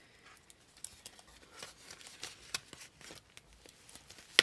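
Faint crinkling and rustling of paper banknotes and clear plastic binder pouches being handled, with scattered small clicks.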